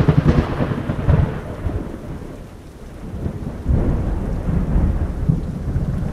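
Rolling thunder over rain, a storm sound-effect bed. One rumble dies away over the first three seconds and a second swells up about four seconds in.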